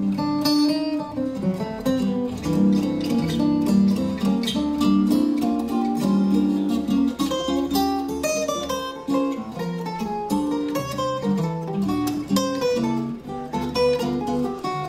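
Two Ken Parker archtop guitars played together as an instrumental duet, plucked single-note lines over picked chords.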